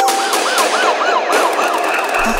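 Siren sound effect in the break of a dancehall track: a wailing tone rising and falling about four times a second over a hiss, with the bass and beat dropped out.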